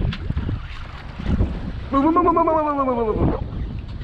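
Wind and boat-water noise on the microphone, then about two seconds in a long wordless vocal cry from a person, rising and then falling in pitch over about a second and a half.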